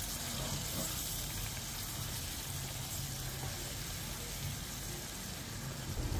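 Chili flakes and chili paste sizzling steadily in hot oil in a wok.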